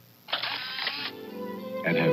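A Polaroid SX-70 instant camera fires and its motor drives out the print in one short whir of under a second, about a third of a second in. Music with held notes comes in right after.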